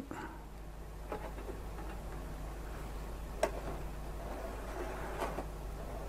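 A few faint clicks of a plastic N-scale passenger car being set down on a rerailer ramp and onto the rails. The loudest click comes about three and a half seconds in, over a low steady hum.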